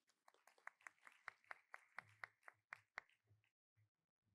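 Faint, light clapping, about four claps a second, stopping about a second before the end.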